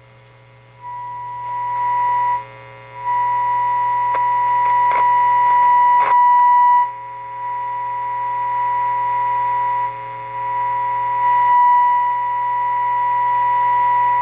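A steady high test tone from the signal generator's modulated 455 kc IF signal plays through the RCA Model T62 radio's speaker, with a low hum underneath. The tone comes in about a second in, cuts out briefly, then returns and grows louder in steps with short dips as the radio's volume is brought up. This is the audible tone used to peak the IF alignment, loud enough to be a little bit annoying.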